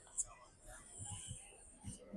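Faint, low voices, with one short sharp click near the start.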